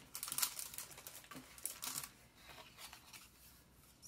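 Paper and card being handled over tissue paper: a run of crisp rustles and light taps in the first two seconds, then quieter, sparser rustling.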